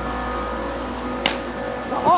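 A single short, sharp crack about a second in, as of a cricket bat striking the ball, over a steady low hum.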